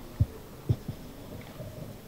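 A pause in a speech: quiet room tone broken by three soft, low thumps in the first second.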